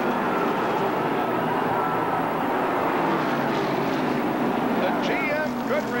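NASCAR Cup stock car V8 engines droning steadily over the noise of a large grandstand crowd, as heard through a TV race broadcast. A man's voice begins near the end.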